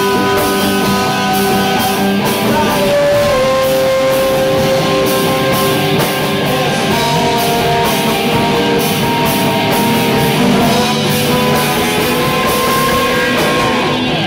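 Live rock band playing loudly: electric guitar holding sustained notes, one bent up and down early on, over bass and a drum kit with regular cymbal hits.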